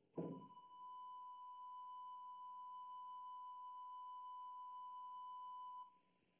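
Television test-signal tone sounding with colour bars: one steady, high, pure beep held for nearly six seconds, then cut off abruptly near the end. It opens with a short thump, the loudest moment.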